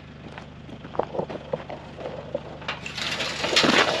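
Galvanised steel field gate being pulled shut by hand: a few light knocks and clinks, then a louder rough noise in the last second or so.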